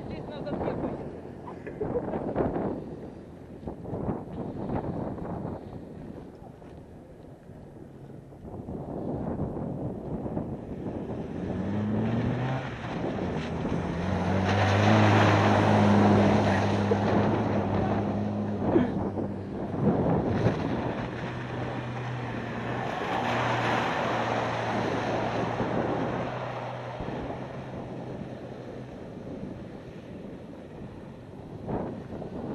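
Lada Niva 4x4's four-cylinder engine revving hard as it drives through a boggy meadow, its wheels spinning and throwing mud. The engine note rises about twelve seconds in, is loudest a few seconds later, then holds steady. Wind buffets the microphone in the first third.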